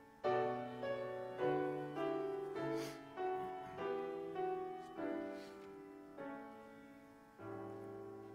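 Piano playing the introduction to a congregational hymn: a slow run of chords, each struck and then left to fade before the next.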